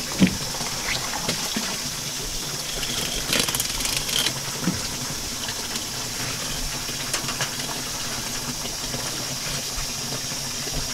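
Water running steadily from a hose across a fish-cleaning table, with a few faint clicks and knocks of a large halibut being handled on the table about three to four seconds in.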